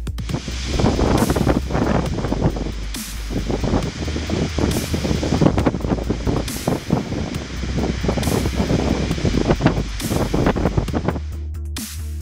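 Storm wind gusting through forest trees, a dense rustling noise over steady background music; the rustling drops out near the end.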